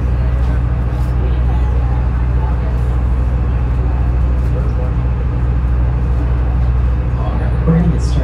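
Sightseeing tour boat's engine running steadily: a loud, even low hum, with passengers' chatter faintly behind it.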